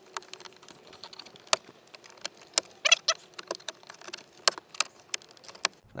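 Plastic clicks and snaps as a plastic pry tool works under a truck's dashboard speaker cover and its retaining clips pop loose: a run of irregular sharp clicks, the loudest about a second and a half, three and four and a half seconds in.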